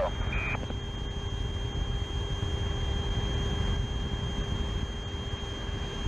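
Steady low rumble and hiss on the Apollo 17 launch air-to-ground radio loop, with a faint steady high tone underneath. About a third of a second in comes one short beep, of the kind a Quindar tone makes when the radio link is keyed.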